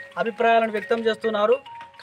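A man speaking, with a brief steady electronic-sounding tone near the end.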